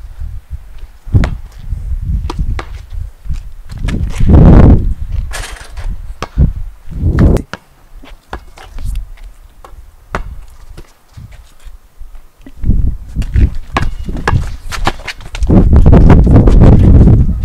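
A basketball bouncing on a concrete driveway and sneakers scuffing, heard as irregular knocks throughout. A body-worn microphone adds loud rumbling rustle, strongest about four seconds in and again near the end.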